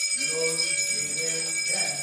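A small brass puja hand bell rung continuously, its high ringing tones held steady throughout, while a male voice chants over it in long held notes.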